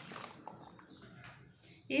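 Faint, soft scrapes and clicks of a metal spoon stirring cooked rice in a plastic bowl; a woman's voice starts at the very end.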